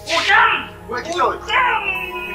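A person crying out in three short, loud, strained bursts of voice.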